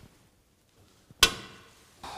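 A single sharp metallic clunk with a short ringing tail, about a second in, from the minivan's steel bodywork being worked. Before it there is near silence.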